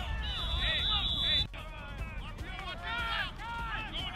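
A referee's whistle: one steady, high blast of about a second that cuts off suddenly, over many overlapping voices.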